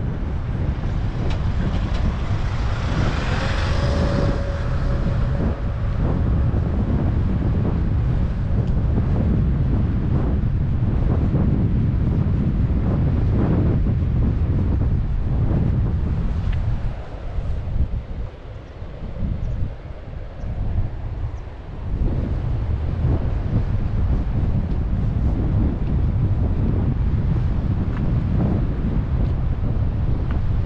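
Wind buffeting the microphone, with a small pickup truck passing close by on the road a few seconds in. The wind eases for a few seconds past the middle, then picks up again.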